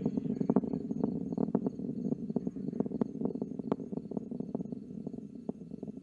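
The Delta IV Heavy rocket's three RS-68A engines during ascent, heard from far off: a steady low rumble with irregular crackling pops all through.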